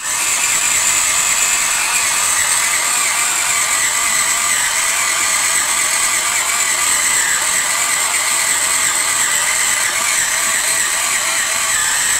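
Small electric motor in a homemade gramophone-style box, starting the moment the power wires are connected and running loud and steady.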